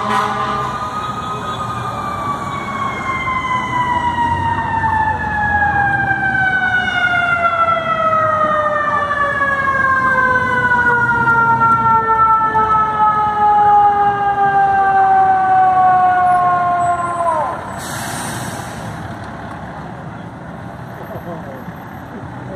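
A fire truck's mechanical siren winds up to its peak about a second in, then coasts slowly down in pitch for about sixteen seconds and is cut off abruptly near the 17-second mark. A short burst of hiss follows, then the low rumble of idling vehicles.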